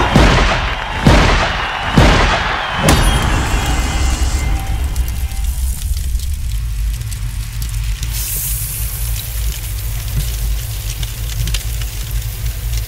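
Trailer-style sound design under an animated logo: four deep booming hits about a second apart, then a sustained low rumble with a rising hiss on top near the end.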